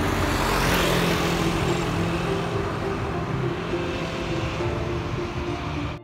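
City street traffic: a car passing, its noise swelling about a second in, over a steady traffic rumble.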